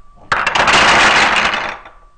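Wooden dominoes and the wooden block tower they trigger collapsing onto a table: a dense clatter of wood on wood, starting about a third of a second in and lasting about a second and a half.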